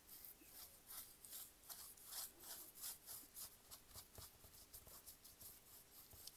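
Faint, quick scratchy strokes of a paintbrush dabbing and dragging a vinegar-and-steel-wool stain over roughened miniature wooden planks, a few strokes a second.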